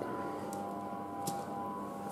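Quiet room tone: a faint steady hum holding a few thin tones, with a couple of faint light ticks.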